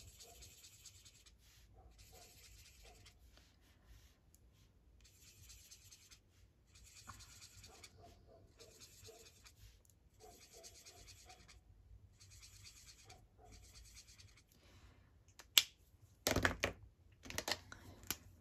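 Alcohol marker nib scratching across tracing paper in a series of faint strokes about a second or two long, with short pauses between them. Near the end comes a loud sharp click, followed by a few knocks of markers being handled and set down.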